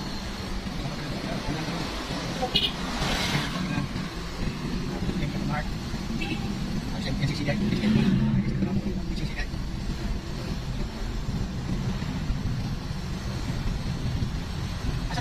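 Car running along a street, heard from inside the cabin as a steady low rumble of engine and road noise.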